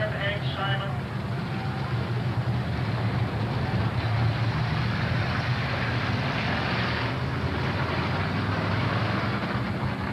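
Dirt-track race cars' engines running together as the cars circle the oval, a steady low drone. A voice is heard briefly at the start.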